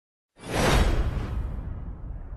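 Title-graphic whoosh sound effect. It starts about a third of a second in, swells quickly and then fades, leaving a low rumble underneath.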